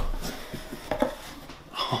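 Cardboard box being opened by hand: the flaps rustle and scrape, with a couple of short sharp taps about a second in.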